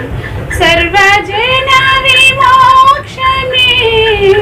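A woman singing a Telugu song, coming back in about half a second in with long held notes that slide between pitches.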